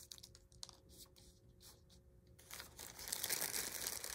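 Faint scattered ticks of paper confetti pieces being dropped and pressed onto glued paper. A little over halfway through, this gives way to louder crinkling as a plastic zip-top bag is handled.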